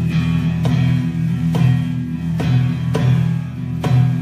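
Live band playing a steady vamp: electric guitar and bass hold sustained chords and notes, with a sharp stroke a little more than once a second.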